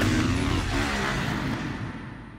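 Motocross bike engine running as the bike passes on the track, fading away as it moves off.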